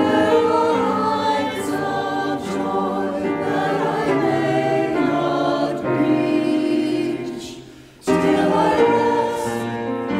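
A choir singing sacred music in long held phrases. The sound fades away shortly before eight seconds in, and a new phrase starts at once.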